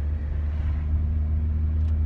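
Steady low rumble of a car, heard from inside the cabin.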